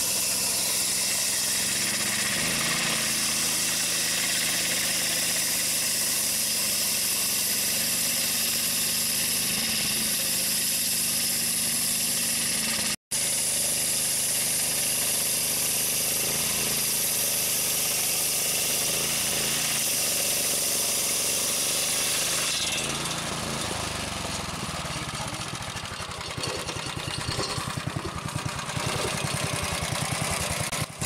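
Homemade portable sawmill with a Honda GX270 petrol engine driving a carbide-tipped circular blade, running under load as the blade rips a board from a log with a steady hiss of cutting. Broken once by a split-second gap, the cut ends about two-thirds of the way through: the hiss stops and the engine settles into a quieter, pulsing idle.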